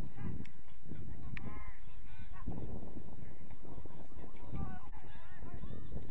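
Wind buffeting the microphone throughout, with several short, distant calls that rise and fall in pitch, the clearest about a second and a half in and again near the end.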